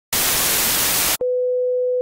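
Analogue television static hiss for about a second, cutting off abruptly, followed by a steady single mid-pitched test-card tone.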